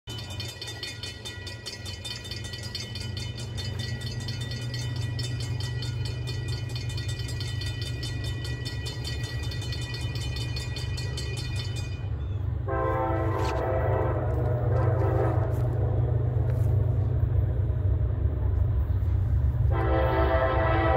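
Grade-crossing warning bell ringing rapidly, then stopping about twelve seconds in, over a low rumble of approaching diesel freight locomotives that grows steadily louder. The lead locomotive's air horn gives one long blast about thirteen seconds in and starts another just before the end, the crossing horn signal.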